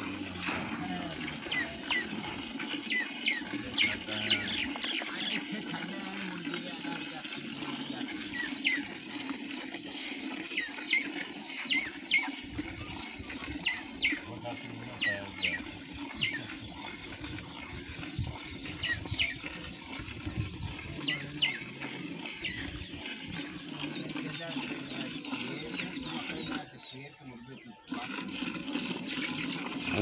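Jets of milk squirting into a steel bucket as a water buffalo is milked by hand, a quick irregular run of short squirts, a few each second.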